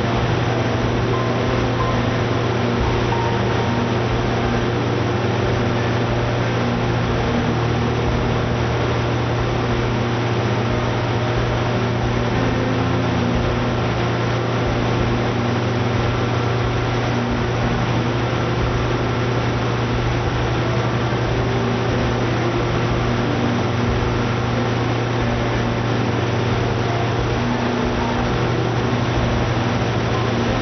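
Coates CSRV spherical-rotary-valve industrial engine generator running on natural gas under full load: a steady, unchanging drone with a strong low hum.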